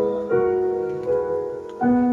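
Keyboard playing slow, sustained chords, with a new chord struck about a third of a second in and another near the end.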